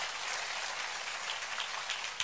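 A large church congregation applauding: a steady wash of many hands clapping.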